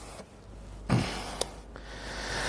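A man's short breathy laugh, a puff of air about a second in, over a low room hum.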